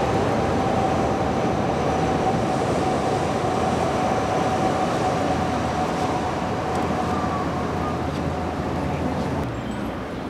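Steady city street noise of traffic, with a faint whine running through most of it and sinking slowly in pitch. The noise eases a little near the end.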